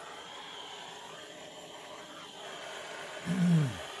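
Steady low hiss of a gas blowtorch turned down very low. Near the end a short throat-clear is the loudest sound.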